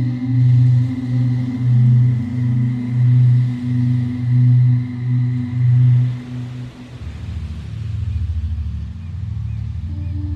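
Ambient background music: a low, slowly pulsing drone that gives way about seven seconds in to a deeper, fluttering drone.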